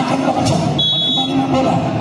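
A referee's whistle: one short, steady high-pitched blast about a second in, over the constant chatter of a crowd.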